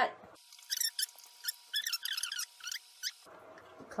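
Sped-up, fast-forwarded voice turned into short, high squeaky chirps, with the low end gone and a faint steady tone beneath.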